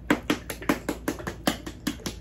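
A container of Country Chic Dark Roast glaze being shaken hard, its contents knocking in a steady rhythm of about five strokes a second.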